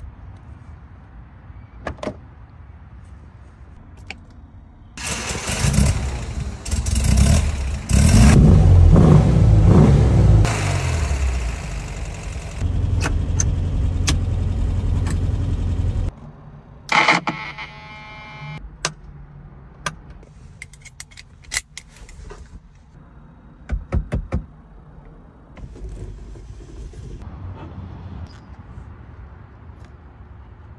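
A classic Porsche engine cranks and catches, revs up and down in bursts, then runs steadily for about five seconds before cutting off. Small clicks of a key and door lock come first. After the engine stops there is a quick run of ratcheting clicks, then scattered light clicks and knocks of door and window hardware.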